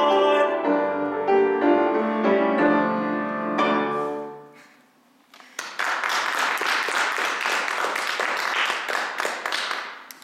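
A male voice holds a final sung note over piano, then the piano plays a few closing chords that die away. After a short pause, a small audience claps steadily.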